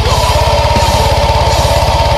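Heavy metal music: distorted electric guitar holding a sustained high note over a rapid, even pulse in the low end.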